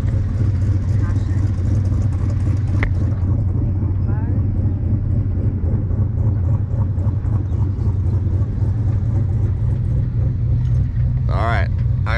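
Steady low drone of an open-top Jeep driving along a rocky off-road trail: engine and drivetrain running at an even pace, with no revving. A voice starts near the end.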